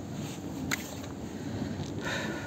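Wind on the microphone, a steady low rush, with one short click about three-quarters of a second in.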